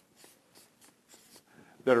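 Marker pen writing on flip-chart paper: a few faint, short scratchy strokes. A man's voice starts speaking near the end.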